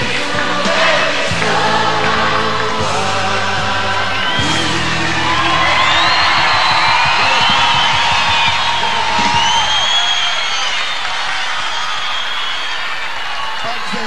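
A live religious pop song with band accompaniment, sung by a male singer with a huge open-air crowd singing along. About ten seconds in the band's bass drops out as the song winds down, and the crowd's voices and cheering carry on.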